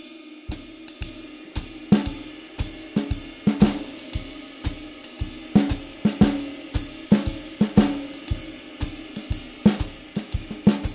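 Acoustic drum kit playing a jazz swing groove: a ride cymbal pattern with hi-hat and a steady bass drum pulse, and the snare drum placing irregular comping accents instead of a backbeat on two and four.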